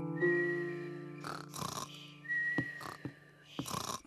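Cartoon snoring: short breathy puffs and a thin high whistle, heard twice, over soft held music chords that fade out.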